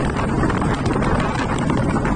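Steady rush of wind buffeting the microphone on a motorcycle moving at road speed, with a fine crackle running through it.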